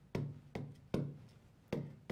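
Stylus tapping against a large touchscreen display while a word is handwritten: four short knocks, unevenly spaced, each with a brief low ring.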